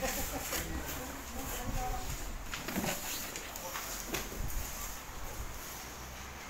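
Indistinct background voices over a low street rumble, with a few sharp knocks in the middle.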